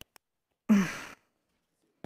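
A woman's short sigh, a voiced note that trails into a breathy exhale, under a second in. Faint clicks come from the earpiece microphone being handled at her ear.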